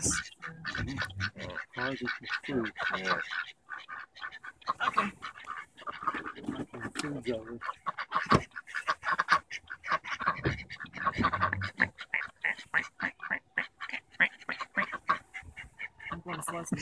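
Ducks quacking in a quick, repeated series of short calls.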